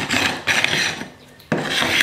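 Handheld pull scraper drawn across a glued-up wooden cutting board, scraping off dried glue squeeze-out: two scraping strokes of about a second each with a short pause between.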